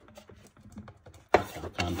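Light clicking and rubbing of 3D-printed plastic parts as a tight-fitting top is pulled off the case by hand, then one sharp snap a little past halfway.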